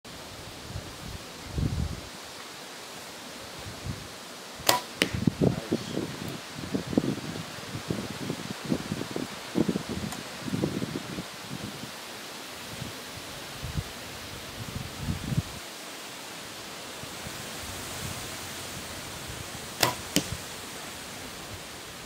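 Compound bow shot twice, about fifteen seconds apart: each shot is a sharp snap of the string followed about a third of a second later by a second sharp knock as the arrow hits the target. Rustling and handling sounds fill the gap between the shots.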